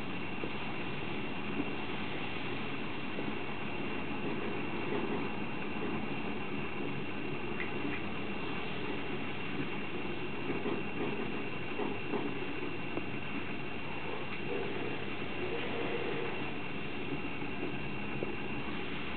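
Bengal kitten chewing and crunching dry kibble from a ceramic bowl, with small clicks of pellets against the bowl, under a steady hiss and a faint high whine.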